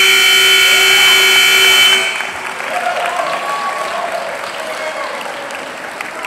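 Gym scoreboard buzzer sounding loudly for about two seconds to end the wrestling bout, cutting off suddenly, followed by crowd applause and cheering voices.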